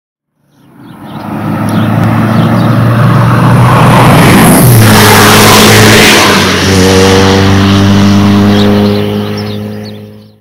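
Road traffic passing close by: a car's engine and tyre noise swell up loud, the engine pitch drops as it goes past about five seconds in, then a steady engine hum carries on before fading away.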